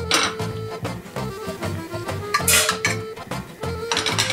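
Background music with a steady beat, over a metal spoon clinking and scraping in a stainless-steel frying pan as cubed lamb sautés in olive oil, with a brief burst of sizzle about two and a half seconds in.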